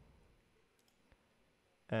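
A few faint, short computer mouse clicks, the sharpest just over a second in, with speech beginning near the end.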